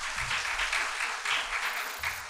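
A congregation clapping together, a dense, steady patter of many hands.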